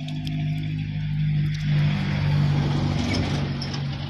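A motor vehicle's engine running close by with a steady low hum, growing louder to a peak about halfway through and easing off near the end, as of a vehicle passing on the road.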